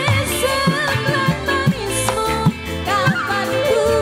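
Live dangdut band playing: a woman sings a wavering melody into a microphone over bass, electric guitar and drums, the drum strokes bending upward in pitch.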